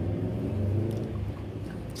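A low, steady rumble with a slight swell in the first second.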